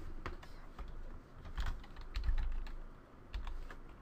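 Typing on a computer keyboard: a slow, uneven run of about a dozen key presses, each a short click with a dull thud beneath it.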